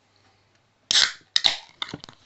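A Bang Energy drink can being cracked open close to the microphone: a loud sudden pop and hiss about a second in, followed by a few quick sharp clicks.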